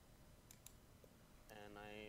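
Near silence with two or three faint clicks about half a second in, then a quiet voice begins about one and a half seconds in.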